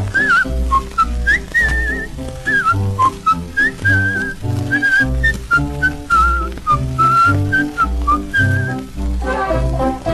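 Instrumental break of a 1953 Korean popular song on a 78 rpm SP record: a high, pure-toned solo melody with wavering pitch plays over a band accompaniment with a steady bass beat.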